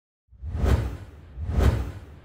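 Two whoosh sound effects with a deep low rumble underneath, each swelling up and falling away, about a second apart, for an animated logo intro; the second trails off into a faint fading tail.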